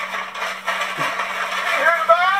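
Audio of a comedy vine sketch starting abruptly with a noisy sound, then a voice speaking near the end.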